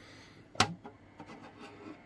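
Handling noise from an empty plastic radio case being turned over in the hands: one sharp click about half a second in, then faint rubbing and small knocks.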